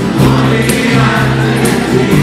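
Live band music at full volume: held notes, voices singing, and drum strokes about once a second.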